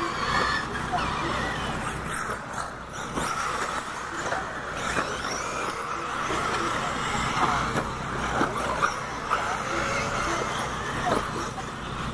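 1/8-scale electric RC buggies running on a dirt track: a steady whine of the electric motors and tyres on dirt, with a few short clicks and knocks of the cars over the jumps.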